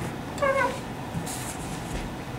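A swivel stool squeaking once as it turns, a short squeal that falls slightly in pitch, followed by a brief soft rustle.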